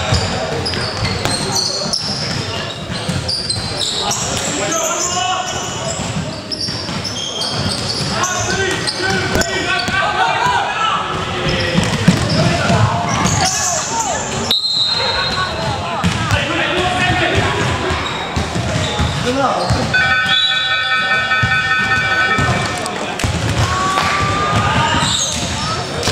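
A basketball bouncing on a hardwood court during a game, with players' voices calling out, all echoing in a large gym hall. About two thirds of the way through, a steady pitched tone sounds for about three seconds.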